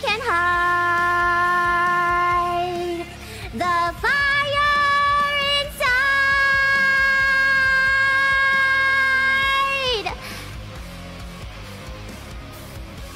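A woman singing three long held notes over a rock backing track. The second and third notes are higher than the first, and the last is held about four seconds before it falls away. After that only the quieter backing music remains.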